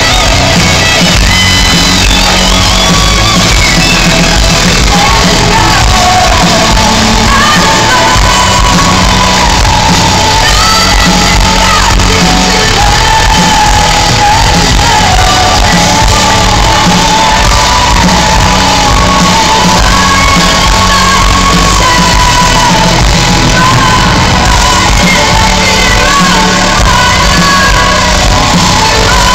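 Symphonic metal band playing live and loud, a woman singing lead over the full band.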